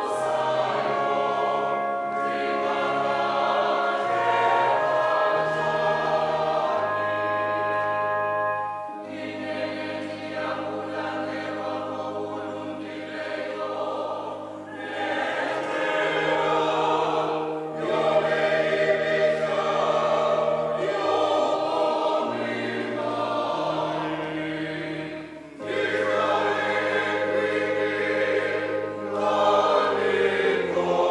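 A church congregation sings a hymn together in many voices. Long held notes sit over steady low notes, with short breaks between phrases.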